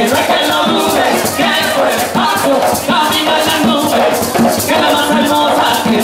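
Live Puerto Rican bomba music: barrel drums and a shaken maraca keeping a steady rhythm under group singing.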